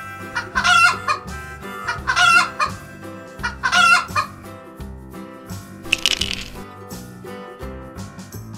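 A chicken calling three times, each call about half a second long and spaced about a second and a half apart, over quiet background music.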